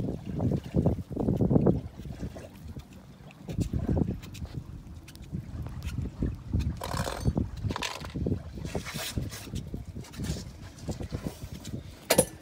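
A metal putty knife and plastic spreader scraping flow coat paste into chips in a boat's fibreglass gel coat, in several short strokes in the second half, with wind rumbling on the microphone.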